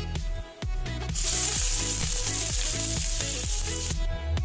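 Hot oil sizzling loudly in a frying pan as chopped onion goes into the tempered cumin seeds and dried red chilli, starting suddenly about a second in and holding steady. Background music with a steady beat plays throughout.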